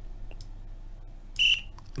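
A short click with a brief high-pitched beep about a second and a half in, the sound of a move being played on a computer chess program's board, over a faint steady hum.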